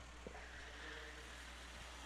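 Faint steady background noise with a low hum underneath.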